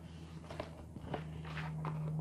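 Soft, scattered clicks and rustles of hands handling something close to a clip-on microphone, with a faint low steady hum coming in about a second in.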